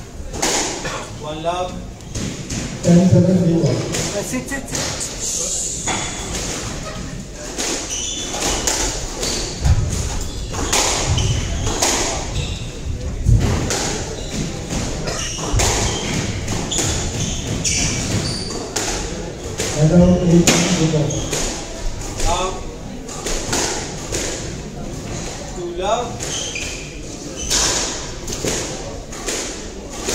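Squash rallies: repeated sharp thuds of the ball struck by rackets and hitting the court walls, coming in quick irregular runs, with voices between points.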